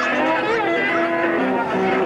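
Steel guitar played with a slide in a blues style: held notes broken by notes that glide up and down in pitch.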